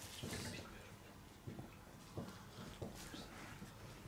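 Felt-tip marker writing on a whiteboard: a few faint, short strokes and taps.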